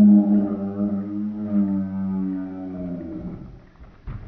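A low sustained drone, one pitched tone with its harmonics, that bends slightly downward and fades out about three and a half seconds in.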